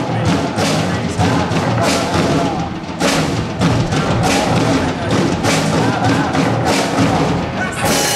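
A live rock band playing loudly: electric guitars and bass over a drum kit keeping a steady beat of drum and cymbal hits.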